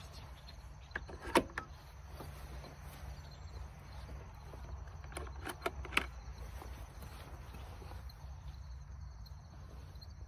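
Wooden chicken coop being opened by hand to check the nest boxes: a few sharp knocks and clunks of wood, the loudest about a second and a half in and a quick cluster around five to six seconds in, over a steady low rumble.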